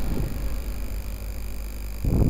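Steady low electrical hum with an even hiss and faint high-pitched whine tones, the background noise of a home voice-over recording.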